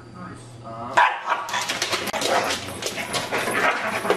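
A dog bursts into loud, aggressive barking about a second in, a sign of its food-guarding aggression.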